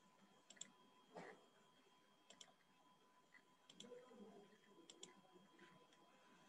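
Near silence broken by a few faint computer mouse clicks, some in quick press-and-release pairs.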